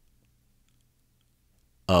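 Near silence with a faint low hum and a few faint clicks, then a man's voice starts speaking near the end.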